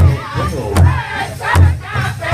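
Powwow drum group singing together in high voices over a steady unison beat struck on a large rawhide-headed powwow drum.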